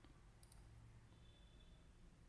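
Near silence with a few faint computer-mouse clicks, most of them in the first half second, as points are picked on screen.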